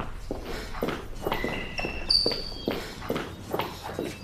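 Footsteps of people walking at a brisk pace, about three steps a second, with a few brief high tones around the middle.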